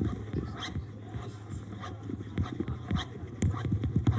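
Amplified, live-processed friction of graphite and other drawing tools scraping across a table top, heard as a dense, irregular run of short low rasps and thumps with a few sharper clicks over a steady low hum. It grows busier and louder about halfway through.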